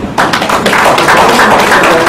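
Audience applauding: a roomful of people clapping. It starts suddenly just after the start and keeps up steadily.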